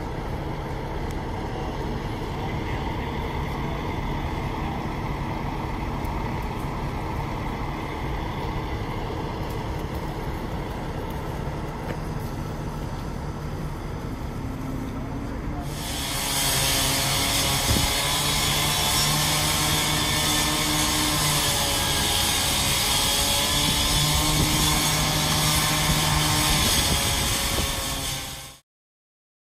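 A large engine running steadily with a low hum. About sixteen seconds in, the sound turns louder and brighter.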